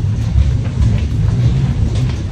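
A loud, steady low rumble with no other clear sound on top of it.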